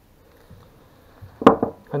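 A single sharp knock about one and a half seconds in, followed by a brief clatter: a small cast-metal alternator vacuum pump set down on a wooden workbench.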